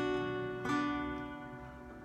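Acoustic guitar strummed slowly, a chord struck about two-thirds of a second in and left to ring and fade away.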